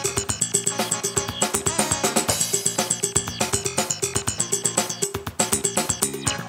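Roland MC-303 Groovebox playing a jazz-funk pattern: a steady drum-machine beat with a repeating bass line and synth parts.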